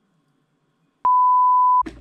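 A single loud, steady electronic beep at one pitch, an edited-in bleep tone about three quarters of a second long, starting about a second in after near silence and cutting off suddenly.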